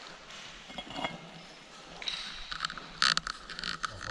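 Boots scuffing and shifting on loose rock rubble on a steep slope, with small scattered scrapes and clinks and a louder scrape about three seconds in.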